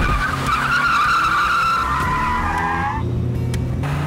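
SUV tyres screeching for about three seconds as it pulls away hard, the squeal sinking slightly in pitch before it cuts off suddenly, with the engine running low underneath.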